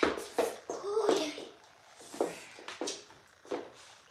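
Short indistinct voice sounds, a child's among them, with a few scattered knocks and rustles of people moving about a small room; it grows quieter about halfway through.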